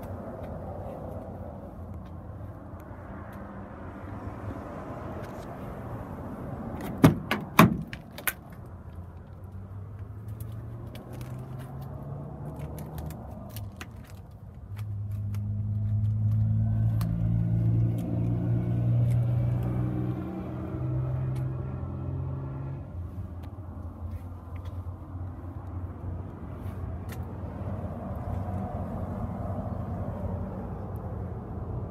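Steady low vehicle rumble with a few sharp latch clicks about seven seconds in, as a car door is opened. From about fifteen seconds a vehicle engine grows louder for several seconds, its note climbing in steps, then fades back into the rumble.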